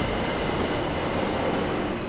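Schindler 700 P traction elevator's stainless steel landing doors sliding open: a steady rolling noise that eases off near the end.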